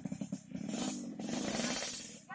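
A motorcycle engine revving, a fast pulsing drone with a rattly hiss, loudest in the second half.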